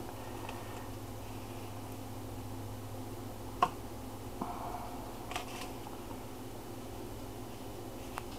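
A steady low hum with a few small clicks and soft rustles of a sharp knife and hands working slices of cured pork loin on butcher paper; one sharper click about three and a half seconds in is the loudest sound.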